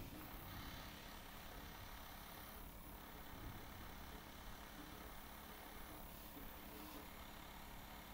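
Faint, steady hiss of a single-action airbrush spraying food colouring, its compressor on the lowest setting.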